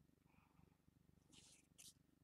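Near silence: a faint low pulsing rumble, with two brief faint rustles of handled card stock about one and a half seconds in.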